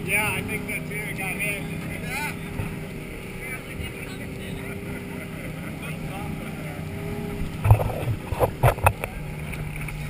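An inflatable dive boat's engine running at speed, with a steady drone and the rush of wind and water around the hull. A few loud thumps come close together near the end.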